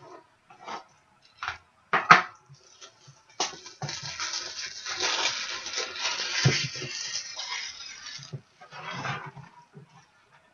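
A few light clicks and taps, then about five seconds of plastic crinkling and rustling as a trading card is handled in a clear plastic sleeve and holder, with a shorter rustle near the end.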